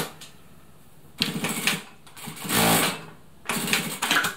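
Siruba DL7200 industrial needle-feed lockstitch sewing machine stitching in three short runs, the middle one rising in speed and the loudest. The machine is doing its automatic back-tack of three stitches at the start and finish of a seam.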